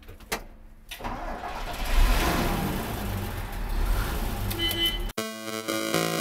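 A few faint clicks, then about a second in a vehicle engine starts and runs with a heavy low rumble. Just after five seconds it cuts off abruptly and a music beat with steady synth notes comes in.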